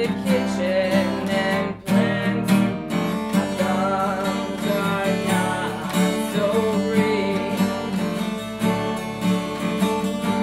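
Two acoustic guitars strumming chords together, with a brief break in the playing about two seconds in.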